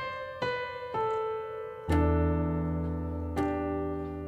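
Piano played slowly: three single melody notes struck one after another, then about two seconds in a full E minor 7 chord with a low bass note, left ringing, and one more note added over it near the end.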